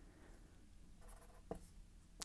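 Faint scratching of a marker pen writing on paper, with a short tap of the tip about one and a half seconds in.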